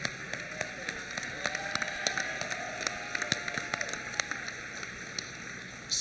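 Audience applauding.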